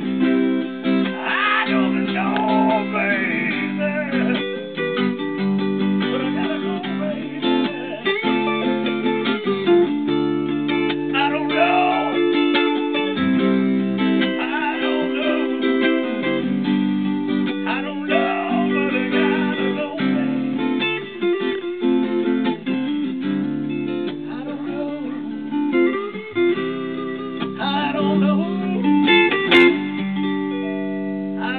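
Electric blues guitar played live through an amplifier in an instrumental break, bent lead notes over sustained lower notes. A single sharp click comes near the end.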